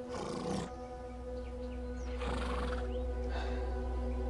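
Horses giving three short, breathy calls about half a second each, over background music with steady held tones and a low drone.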